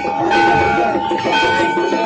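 Hindu temple bells ringing for the evening aarti: a steady ringing tone, with a higher bell note struck again about once a second.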